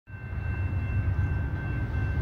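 Rail-platform ambience: a low, uneven rumble with a thin, steady high-pitched tone held over it.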